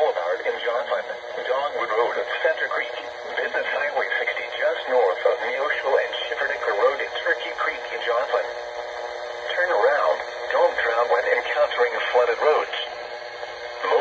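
A NOAA Weather Radio broadcast voice reads a National Weather Service flood warning, listing flooded low-water crossings, through a Midland weather alert radio's small speaker.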